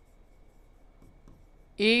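Stylus writing on a touchscreen smart board: faint scratches and light taps of the pen tip on the screen as letters are written.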